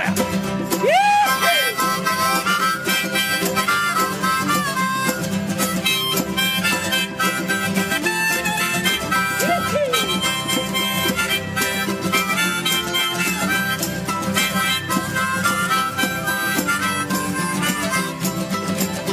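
Harmonica playing an instrumental break over strummed acoustic guitar, with bent notes about a second in and again around nine seconds in.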